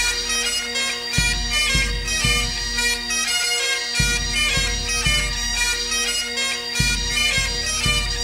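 Breton bagad pipe band playing a gavotte tune: bagpipes sound a melody over a steady drone, with a deep beat that comes in groups of three.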